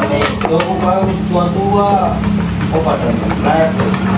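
A person's voice talking over a steady low hum, with a few light clicks.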